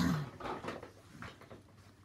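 A brief wordless murmur from a woman's voice, falling in pitch, then a few soft rustles.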